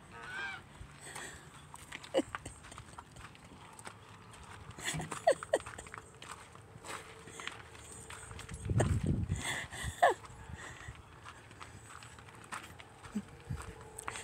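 Footsteps crunching on gravel and dirt, one walking pace of scattered short clicks, with a few brief squeaks in between.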